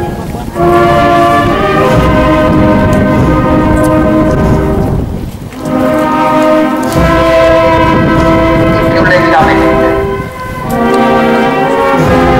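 Brass band playing slow, long-held chords in three phrases, with short breaks about half a second in, about five and a half seconds in, and about ten and a half seconds in.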